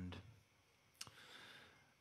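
Near silence in a pause in talk at a vocal microphone. About a second in comes one soft mouth click, followed by a faint breath.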